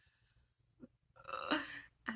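A woman's short, breathy laugh about a second in, after a moment's quiet.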